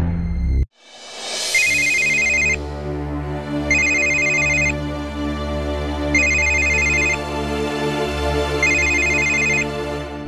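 A telephone ringing four times, each ring about a second long with a rapid trilling pulse, about two and a half seconds apart, over sustained background score music.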